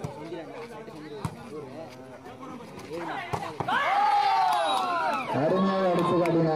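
Men's voices calling over a volleyball rally, with two sharp smacks of the ball being struck, then a loud, drawn-out shout just after the middle as the point is won.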